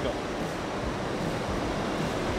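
Loud, steady noise of a glass works' batch-handling plant, where the raw glass batch falls through a chute into the furnace feed hopper. It is an even, unbroken noise with no distinct knocks or rhythm.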